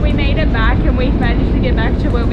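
Steady low rumble of a harbour ferry under way, heard from its passenger deck, with people talking over it.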